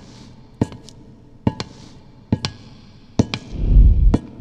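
Footstep foley samples of dress shoes on a steel plate, pitched slightly down: paired heel-and-toe hits about every 0.8 s, each leaving a short metallic ring. A deep low rumble swells near the end.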